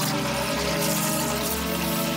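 Toilet flushing, water swirling in the bowl, under background music with held tones.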